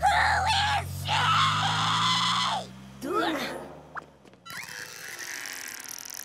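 A cartoon character's long, wavering scream for about two and a half seconds over a low steady hum, followed by a short falling cry. Near the end comes a hissing rush with a thin high whistle.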